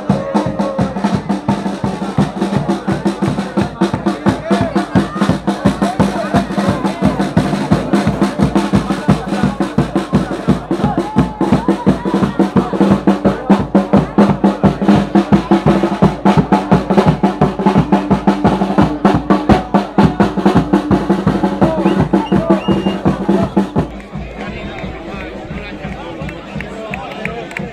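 Drums beaten in a fast, steady rhythm among a crowd of loud voices. The drumming stops about two seconds before the end, leaving the crowd voices.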